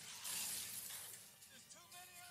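Soundtrack of an animated film played through a TV: a loud crashing noise over music in the first second, then a voice starting to speak or sing in the second half.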